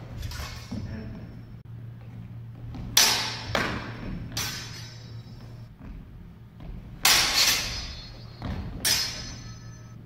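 Steel longswords clashing in a reverberant hall: three blade strikes starting about three seconds in, then a flurry of four from about seven seconds, each with a short metallic ring, over a steady low hum.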